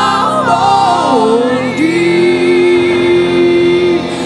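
A worship song sung into a microphone. The singer's melody steps down over the first two seconds, then settles into one long held note over a steady backing.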